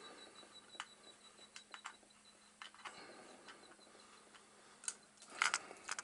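Faint, scattered clicks and taps of a plastic cassette tape being handled, with a few slightly louder clicks near the end.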